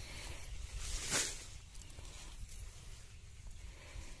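Low, uneven rumble of wind on the microphone, with a brief rustle of corn leaves about a second in.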